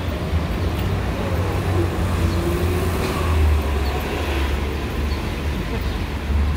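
City street traffic: a steady low rumble of passing cars.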